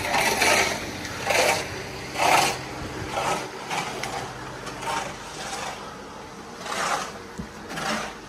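Footsteps scuffing on gritty concrete and then on wooden planks, about one step a second, over a faint steady low hum.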